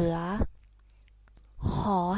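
Only speech: a voice reciting Thai consonant names, ending 'so suea', a pause of about a second, then beginning 'ho hip'.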